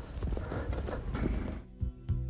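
Irregular footsteps on a hard path against outdoor background noise. About one and a half seconds in, gentle background music with plucked notes begins.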